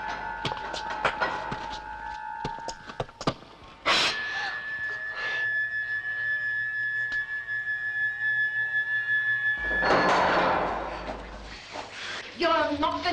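Film soundtrack of knocks and thuds over held notes of music. A sudden loud hit comes about four seconds in, then one high note is held for about six seconds, and a loud, noisy swell rises near the end.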